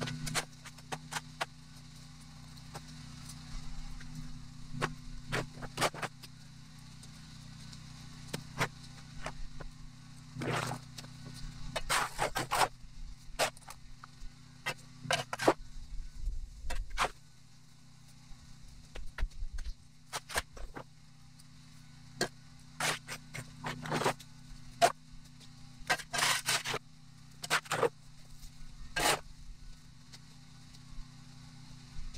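Irregular scrapes and knocks of a tool working on hard ground, some in quick clusters, over a steady low engine hum.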